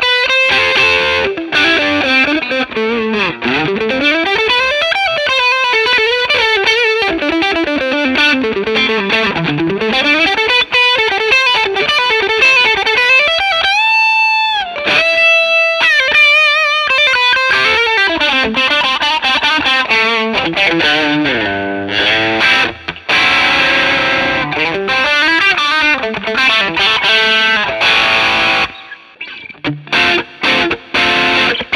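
Distorted electric guitar played on a Fender Player Plus Stratocaster through effects: fast lead runs that climb and fall in pitch, with a high note bent up and held about halfway through. Near the end the playing drops away briefly before a new phrase starts.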